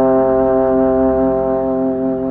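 Yamaha YSL882 tenor trombone holding one long, steady note, over piano accompaniment.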